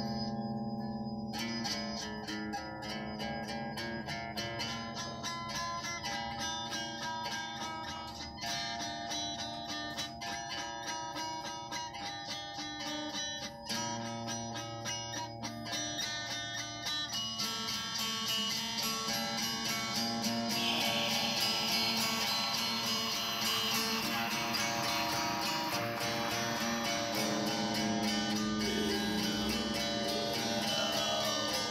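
Electric guitar picked with a coin in place of a pick, playing fast repeated picking on chords and single notes in black metal style. The playing grows louder and brighter a little past the middle.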